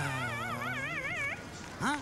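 A man's comic whimpering wail, a high wavering cry with a quick, even vibrato lasting about a second and a half, then a short rising and falling vocal sound near the end.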